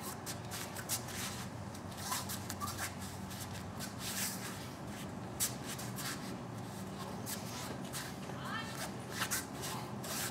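Swishes and rustles of cloth and bare feet shuffling and sliding on rubber mats as a wooden bokken is swung through a kata, over a steady low hum.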